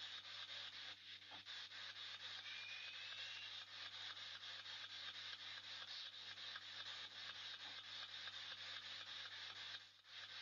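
Faint room tone through a boosted camera microphone: a steady hiss over a low steady hum, with a brief faint rising whistle about two and a half seconds in.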